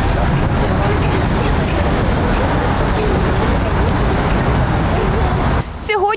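City street ambience: steady traffic noise with a faint babble of passers-by's voices, cutting off shortly before the end.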